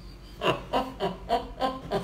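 A man laughing quietly in a run of short pulses, about three or four a second, starting about half a second in.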